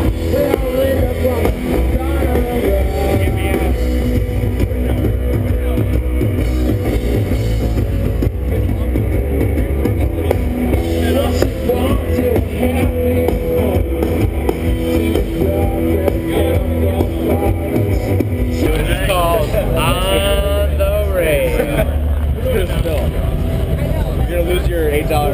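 Loud rock music with guitar and drums. People's voices, shouting or singing along, rise over it in the last few seconds.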